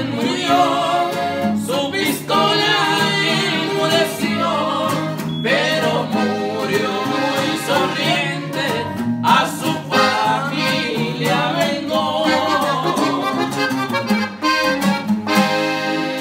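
Live norteño corrido: a Gabbanelli button accordion playing the melody over a strummed twelve-string bajo sexto, with a man singing.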